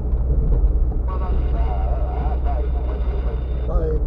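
Steady low rumble of a car driving, heard from inside the cabin. Indistinct talking sits over it from about a second in until shortly before the end.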